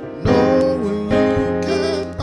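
Live church band music: electric guitar and keyboard playing a slow gospel tune, with gliding melody notes and a strong beat about once a second.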